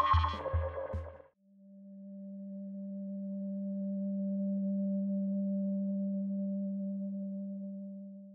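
Electronic music with a drum-machine beat cuts off about a second in. After a moment a single low, pure electronic tone swells in slowly and holds steady, fading near the end.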